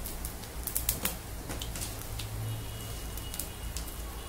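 Cumin seeds frying in hot mustard oil in a kadhai: a soft sizzle with scattered sharp crackles and pops as the seeds toast, over a low steady hum.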